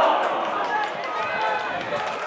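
Spectators at a small football ground calling out and talking as their reaction to a shot going just wide dies away, with several voices overlapping.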